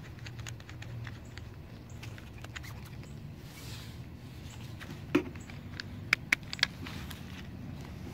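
Scattered light clicks and rattles close to the microphone from the handlebar-mounted phone gimbal, over a low steady hum, with a few sharper clicks about six seconds in.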